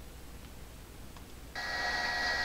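Faint steady hum, then about one and a half seconds in a steady high electronic tone starts abruptly and holds to the end.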